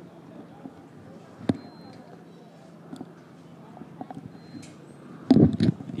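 Faint open-air ambience at an empty football pitch, with one sharp knock about a second and a half in and a few fainter ticks after it. A man's voice begins near the end.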